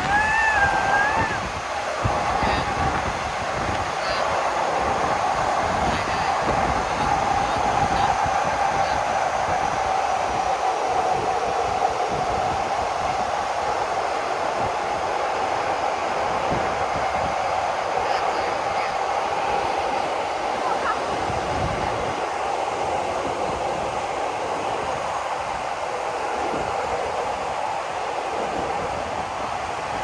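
Passenger train rolling slowly along the track, heard from an open carriage window: a steady rumbling rail noise with a ringing tone running through it. A brief wavering wheel squeal comes right at the start.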